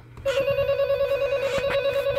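Gemmy animated Ghostface mini figure's speaker playing an electronic telephone ring: one steady, fast-warbling ring of about two seconds, starting a moment in. It opens the figure's sound routine, which the owner says is quieter than it should be because the batteries need changing.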